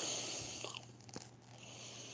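A few faint clicks, one at the start and one just over a second in, over a low steady hum and hiss, picked up close to the microphone.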